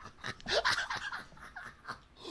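A man laughing hard in short breathy gasps, close to the microphone.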